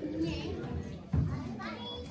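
Children's voices talking and calling out in a large hall, with a sudden louder burst a little after a second in.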